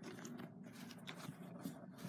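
Faint handling noise: soft rustling against fabric and a few small clicks as the camera and doll are moved about.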